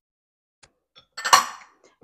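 A kitchen utensil clinking against a bowl: two light taps, then a louder clatter about a second in that quickly fades, as sour cream goes into the flour-and-water mix for the sauce.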